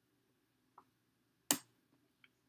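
Checker pieces being handled: a faint tap of a piece on the board, then about half a second later one sharp click as a captured checker is dropped onto a stack of captured pieces.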